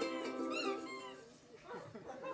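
Live band's ukulele chords with high, squeaky notes that rise and fall, the last one about half a second in, the music dying away soon after. Faint voices follow near the end.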